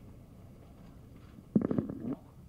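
Quiet room tone, then about one and a half seconds in a brief, low, gravelly burst from a man's voice close to the microphone.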